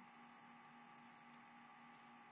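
Near silence: room tone with a faint steady hum and hiss.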